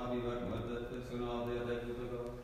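A man's voice intoning an Orthodox akathist prayer in chanted recitative, held on a near-steady reciting tone.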